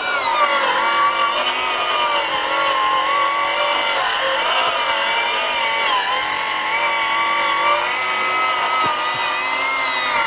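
DeWalt DCS570 20V cordless 7-1/4-inch circular saw with a thick-kerf blade cutting lengthwise along a wooden board. Its motor whine runs steadily under load, dipping briefly in pitch a few times as the blade bogs.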